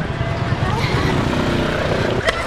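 Outdoor street noise on a handheld camera: a heavy, uneven low rumble, with faint voices joining about a second in.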